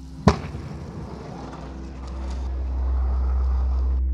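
Inline skates landing hard on pavement with one sharp clack, followed by a rushing noise that swells toward the end.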